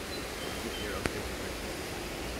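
Steady hiss of rushing river water, with a single sharp click about a second in.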